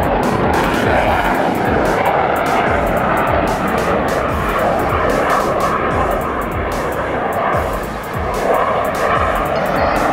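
F-16 fighter jet's engine noise as it flies its display high overhead, steady and loud with a brief dip about eight seconds in, with music playing over it.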